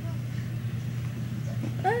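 A steady low hum with faint background noise; near the end a girl's short exclamation, "ah".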